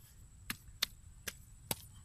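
Hands patting and pressing wet mud against a plastic sheet lining a dug hole, giving four sharp taps about half a second apart.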